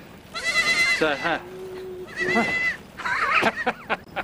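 Young lambs and goat kids bleating: several high, quavering calls one after another.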